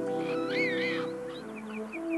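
Background music with held notes, and about half a second in a high, wavering call from a cheetah.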